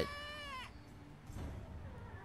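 A high-pitched anime character's voice exclaiming "So huge!", one held cry of under a second, followed by fainter dialogue from the episode.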